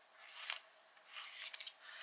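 Dry scraping strokes of a coloured pencil, three of them, each about half a second long.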